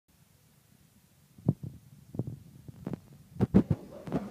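Irregular dull thumps and knocks, starting about a second and a half in and loudest in a quick cluster near the end, typical of the recording phone being handled and repositioned.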